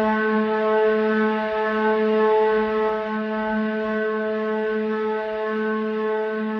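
Outro music: one low note held as a steady drone, rich in evenly spaced overtones, with no rhythm or melody.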